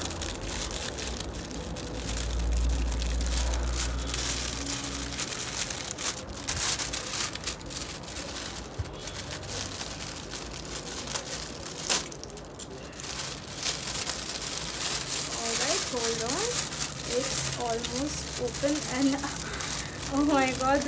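Crinkling and rustling of a clear plastic bag and shredded paper packing filler being handled by hand, with many small irregular crackles.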